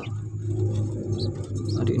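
A steady low hum, with a few faint, short high peeps from Muscovy ducklings.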